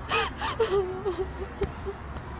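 A woman sobbing: a string of short gasping breaths and wavering, high whimpers.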